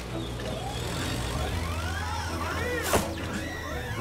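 An animated construction machine's engine sound effect running with a steady low hum. From about a second and a half in, swooping whistle-like tones rise and fall over it, and there is one short sharp knock near three seconds.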